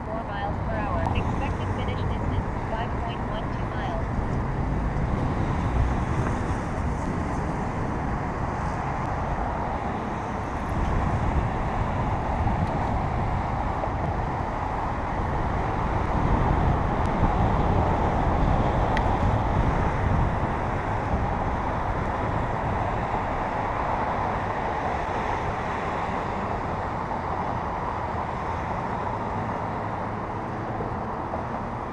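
Steady rush of wind and riding noise on a bicycle-mounted camera's microphone, with car traffic on the adjacent road.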